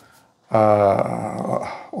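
A man's voice holding one long, drawn-out vowel, a hesitation sound between words, starting about half a second in and lasting about a second and a half.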